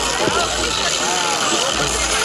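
Several people talking over one another, over steady outdoor background noise.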